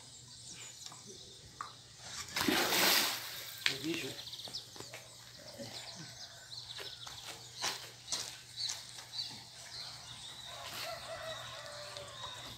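Quiet outdoor ambience at a pond's edge with faint, high bird chirps. A brief rush of noise about two and a half seconds in, lasting about a second, is the loudest sound.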